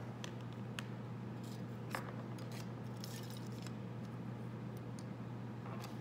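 Light, scattered clicks and taps of pottery tools being handled and set down on a wooden table, one sharper click about two seconds in, over a steady low hum.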